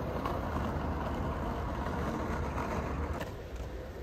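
Skateboard wheels rolling, a steady rumble that softens about three seconds in.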